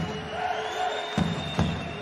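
Basketball arena crowd noise with music playing over it, and a couple of dull thuds of the ball bouncing on the court just past the middle.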